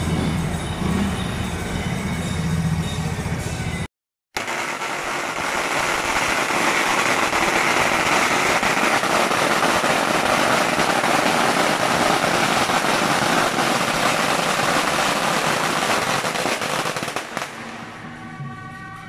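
After a brief dropout about four seconds in, a long string of firecrackers goes off, a rapid continuous crackle of small bangs that thins out near the end.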